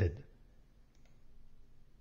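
The end of a man's narrating voice, then near-quiet room tone with a single faint click about a second in, followed by a faint low hum.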